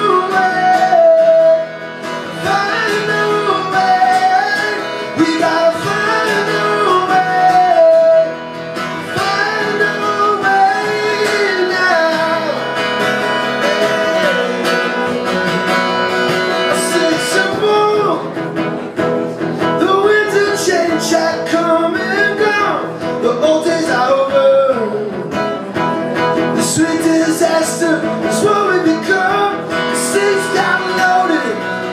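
Solo male vocalist singing live, accompanying himself on a strummed acoustic guitar.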